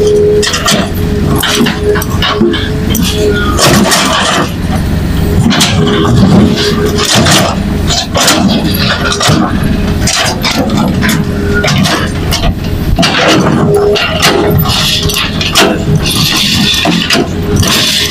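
Hitachi crawler excavator's diesel engine running under load while digging, with a steady hum over the rumble. Its bucket scrapes through stony soil, with frequent sharp knocks of rocks and metal.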